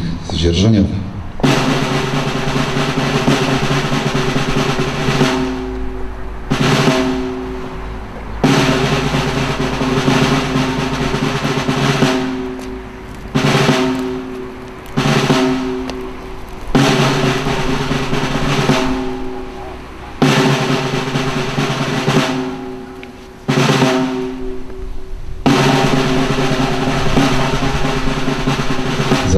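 Snare drum rolls, starting about a second and a half in: several long rolls of a few seconds each, broken by short pauses and shorter rolls, with a low ringing tone under each roll.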